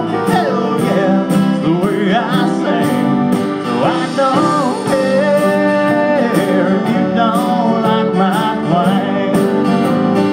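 Live country band music: acoustic guitar and band accompaniment under a wavering lead melody line.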